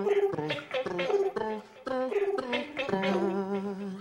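A cappella group voices in a choppy, rhythmic pattern of short repeated sung syllables, then one held note with a wavering vibrato through the last second.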